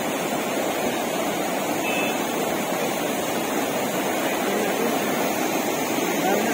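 Fast-flowing floodwater rushing and churning across a road, a steady, unbroken rush of water.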